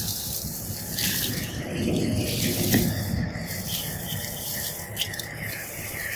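Rustling of tall grass and brush against an e-bike as it is walked and manoeuvred through the undergrowth, with a swell of low rustling about one to three seconds in.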